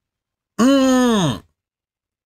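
A man's single drawn-out groan, held at one pitch and then falling away, lasting under a second.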